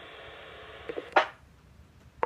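Police two-way radio receiving an open channel between transmissions: a steady hiss of radio static. Just over a second in, a short burst cuts it off as the carrier drops, and the speaker goes almost quiet.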